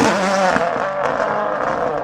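Rally car engine at high revs, its pitch falling sharply at the start and then trailing off into a rough, fading noise.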